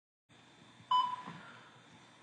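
A single short electronic beep about a second in, fading quickly over faint room hiss.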